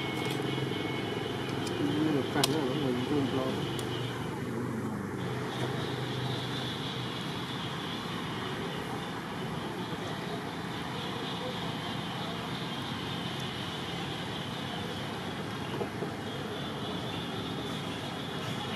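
Steady outdoor background noise, a constant even hiss, with faint distant voices about two to four seconds in.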